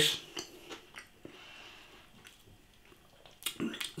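A person quietly chewing a mouthful of crispy pizza crust, with a few soft mouth clicks, then a short breath near the end.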